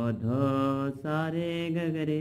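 A man singing a melody line in long held notes with his own voice, the phrase breaking briefly about a second in before carrying on.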